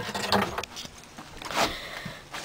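Handling noise from a handheld camera being moved about: uneven rustling with a couple of soft knocks, about a third of a second in and again near the middle.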